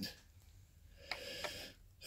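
A short, soft breath drawn in about a second in, lasting under a second, before speech resumes.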